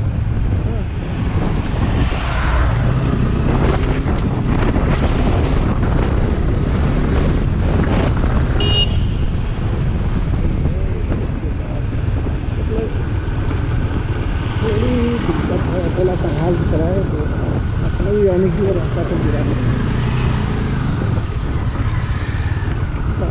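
Motorcycle riding at road speed: steady low engine and road rumble with wind buffeting the microphone. A brief high beep sounds about eight and a half seconds in.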